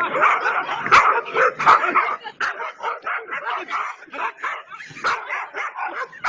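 Several small dogs barking and yipping, many short calls overlapping in a rapid, continuous chorus.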